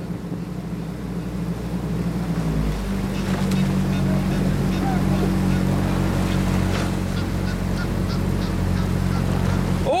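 Motor launch's engine running steadily, picking up speed about two and a half seconds in: its hum rises in pitch and grows louder, then holds.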